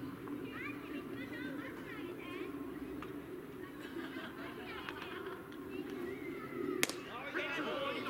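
Voices of players and onlookers chattering and calling out across an open ball field. One sharp crack comes about seven seconds in, and the calling grows louder just after it.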